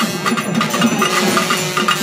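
Drums playing a steady rhythm, with other percussion.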